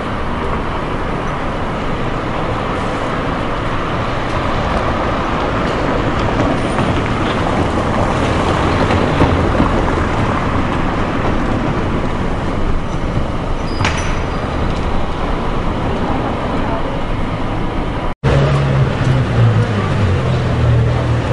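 City street ambience: steady traffic noise mixed with indistinct voices. Near the end a sudden brief cut in the sound is followed by a low, steady engine hum.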